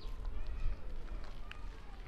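Wind rumbling on the microphone, with a faint voice and a short sharp tick about one and a half seconds in.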